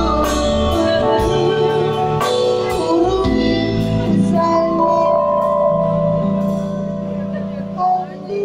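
Live band with singers performing a Turkish pop song: strummed chords and drum hits for the first few seconds, then long held notes, with the music falling away slightly near the end.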